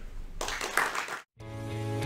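Audience applause that cuts off abruptly after about a second, then instrumental outro music that comes in and grows slowly louder.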